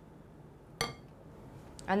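A single clink of a serving spoon against a glass bowl about a second in, ringing briefly.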